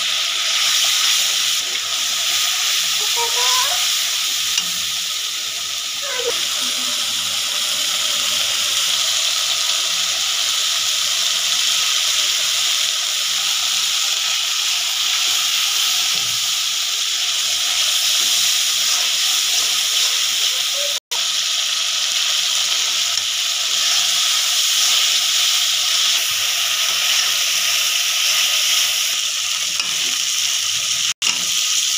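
Onion paste and turmeric frying in hot oil in a black iron kadai, a loud steady sizzle, with a metal spatula stirring through it. The sound cuts out for an instant about two-thirds of the way through.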